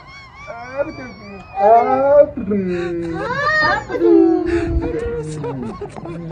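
Wordless vocal sounds from a person's voice, wailing and moaning with long swoops up and down in pitch instead of words. They are loudest about a second and a half in and again around three and a half seconds.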